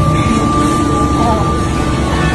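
Loud, steady background din with indistinct voices, and a thin steady high-pitched tone that stops shortly before the end.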